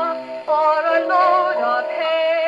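A 1939 Decca 78 rpm shellac record playing on an HMV 130 acoustic gramophone with a No. 5A soundbox: a dance-band song with a wavering melody over sustained accompaniment, the sound thin, with little bass and little treble.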